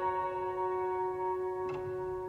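Background piano music: a held chord fading slowly, with one soft note struck near the end.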